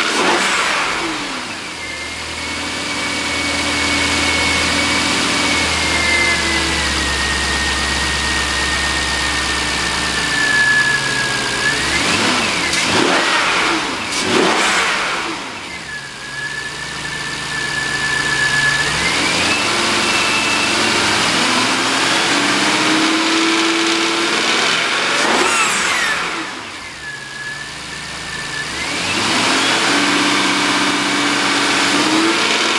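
A 2003 Jaguar XJ8's 4.0-litre V8 idling and revved several times, the pitch sweeping up and falling back to idle, with a thin high whine over the idle. It runs smoothly and healthily.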